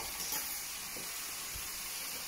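Steady hiss from the stovetop: a pot of pasta water boiling over a gas flame beside a sizzling pan. A couple of faint taps come as fresine pasta is lifted out with tongs, dripping with water.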